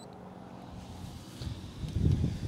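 Faint outdoor background with a low rumble on the microphone that builds over the last half second.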